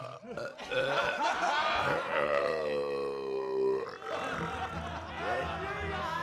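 A man's long, loud belch after draining a tankard of ale, lasting about two seconds and sinking slightly in pitch. A group of men shout and cheer around it.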